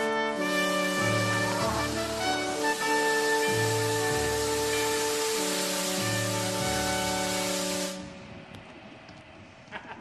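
Ceremonial brass fanfare of held, changing chords over alternating low bass notes, with a steady rushing noise beneath, lasting about eight seconds before stopping abruptly.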